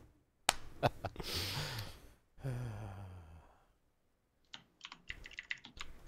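Computer keyboard typing: a quick run of key clicks over the last second and a half. Earlier there are a couple of single clicks and a short, low voiced hum.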